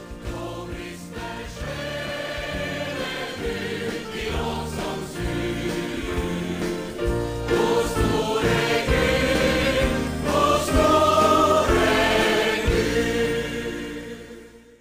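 A choir singing gospel music over sustained low accompaniment, growing louder about halfway through.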